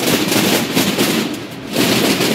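Hundreds of processional snare drums (tambores) beaten with sticks at once, making a dense, rapid rattle. It dips briefly about one and a half seconds in, then swells again.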